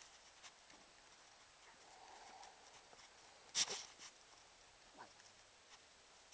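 Dogs scuffling and playing on paving slabs: faint scattered clicks, one sharp knock about three and a half seconds in, and a short falling note near the end.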